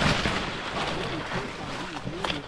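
Saw palmetto fronds rustling and scraping against the camera and clothing while pushing through dense undergrowth, loudest at the start and easing off.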